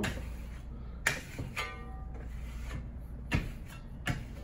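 Polished steel trowel burnishing black Venetian plaster in short strokes. A few sharp scrapes and a brief squeal come about one and a half seconds in.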